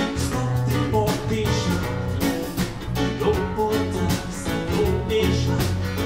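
Live band playing through a Bose L1 line-array PA: bass, electric guitar, keyboard and drums with congas, keeping a steady beat, with a singer's voice over it.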